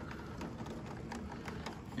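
Heavy rain heard through a closed window: a steady wash of rainfall with irregular small taps of drops striking the glass.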